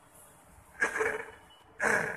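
A man's breath and short vocal sounds close to a microphone in a pause between spoken phrases: one brief sound about a second in and a breathy intake near the end.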